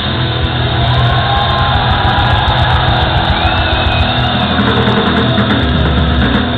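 Live punk rock band playing loud through the concert PA, heard from within the crowd in a large hall.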